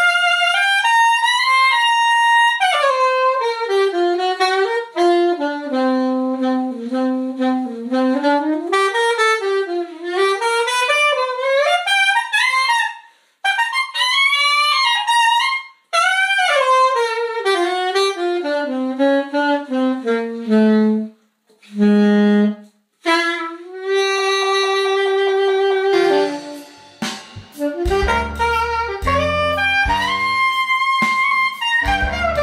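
RS Berkeley curved soprano saxophone played solo in flowing jazz phrases of quick runs, broken by short breath pauses. About two-thirds of the way through it holds one steady long note.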